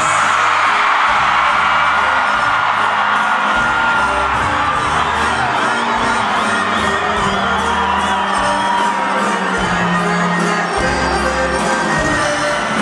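Live norteño band music with accordion and bass, with a large crowd cheering and whooping over it.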